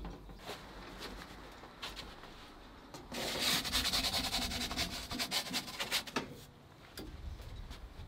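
Pizza peel scraping and rubbing on the stone of an Ooni 3 pizza oven as a pizza is slid off it into the oven, a raspy scrape of about three seconds starting about three seconds in.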